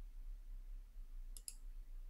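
Two short, faint clicks in quick succession about a second and a half in, over a steady low electrical hum in a quiet room.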